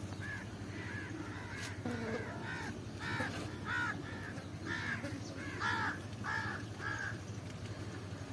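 A bird calling over and over, short pitched calls about two a second, loudest in the middle, over a steady low background hum.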